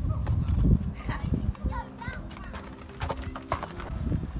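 Footsteps crunching on a gravel path as a person walks, with low rumbling handling noise at first and faint voices in the background.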